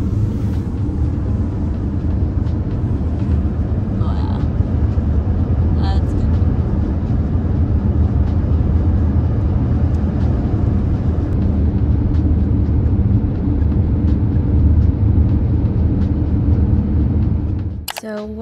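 Road noise inside a moving car's cabin: a steady low rumble of tyres and engine.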